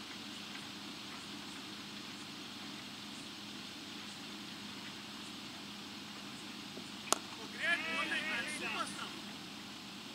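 A single sharp crack of a cricket ball off the bat about seven seconds after the delivery, followed at once by a brief shout from a player, over a steady background hum.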